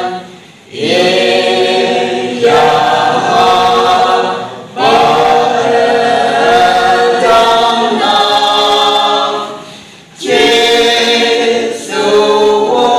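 Small mixed choir of men and women singing a Konyak gospel song a cappella in long, held phrases, with brief breaks for breath about half a second in, just before five seconds and near ten seconds.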